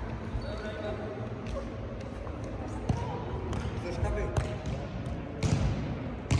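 Futsal being played in a sports hall: thuds of the ball being kicked and bouncing on the court, more often and louder in the last few seconds, over voices from players and spectators.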